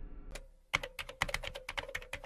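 Typing sound effect: a quick run of keystroke clicks, about eight a second, starting about three-quarters of a second in, after one lone click. A fading musical tone dies away in the first half second.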